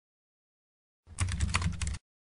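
Keyboard-typing sound effect: a rapid run of clicks, about ten a second, starting about a second in, over a low hum.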